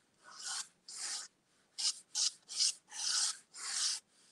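A fine drawing point scratching across paper in about seven quick strokes, each under half a second, as lines are sketched.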